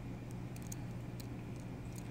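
Steady low background hum with a few faint, light clicks from small screws and a screwdriver being handled.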